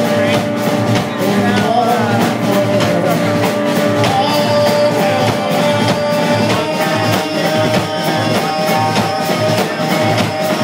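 Live rock band playing: electric guitars over a drum kit with steady drum hits.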